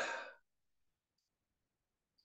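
A woman's short audible breath between phrases of speech, lasting about a third of a second.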